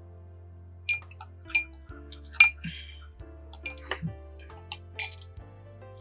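Soft background music with sustained low notes, over a run of sharp, short clinks of cutlery on dishes, the loudest about two and a half seconds in.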